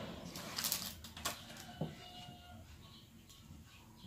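Faint handling noises: a plate with a cheese pie set down on the table and handled, with a few short clicks and knocks in the first two seconds, then a brief thin whistle-like tone a little after two seconds in.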